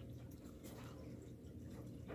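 Quiet room tone in a pause between speech: a faint steady low hum with a few soft clicks.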